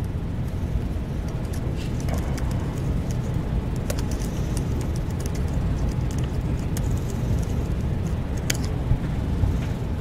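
Steady low room rumble with a few sharp, scattered clicks of laptop keys being typed.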